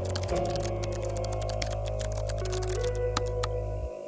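Rapid computer-keyboard typing clicks over soft background music with held tones; the typing stops near the end.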